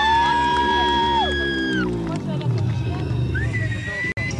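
Live rock concert recorded from the audience: a voice holds a long wavering note over sustained high instrument tones, which stop about two seconds in. Band and crowd noise follow, and a new note glides up and holds near the end.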